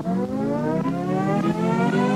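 A synthesized riser: a single tone with many overtones gliding slowly upward, building toward the start of the background music.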